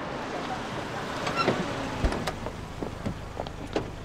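Steady street and traffic noise, with a short high chirp a little over a second in, a single dull thump about two seconds in, and a few light clicks after it.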